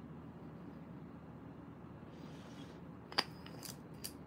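Quiet desk-top handling of nail-stamping tools and polish bottles over a low steady room hum: a sharp click about three seconds in, then a few lighter clicks.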